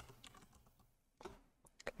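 Faint, scattered keystrokes on a computer keyboard, with a few quick taps close together near the end.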